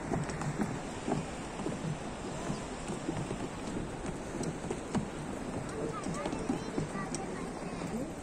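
Wind rumbling on the microphone, with faint voices of people on the bridge and a few scattered light knocks.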